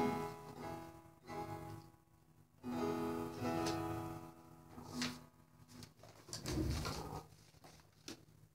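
Acoustic guitar strummed a few times, each chord left to ring and fade before the next, with short gaps between. A dull low thump comes near the end.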